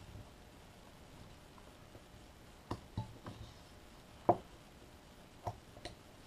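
A carving knife cutting small chips from a wooden figure: about half a dozen short, crisp snicks of the blade in the wood, the sharpest a little over four seconds in, in a quiet room.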